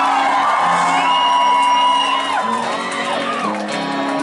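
Live rock band music with long held notes, loud and steady, with the crowd whooping and cheering over it.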